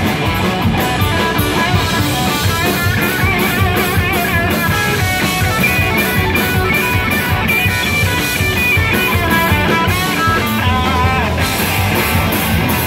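Live punk rock band playing loudly: distorted electric guitar, bass guitar and drum kit.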